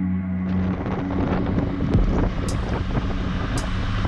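Rushing wind and engine noise from a BMW R1200GS motorcycle on the move rises in a little after the start, taking over from background music.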